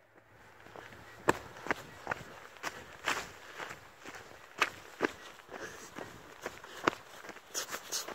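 Brisk footsteps of the person carrying the camera, about two steps a second and uneven in loudness.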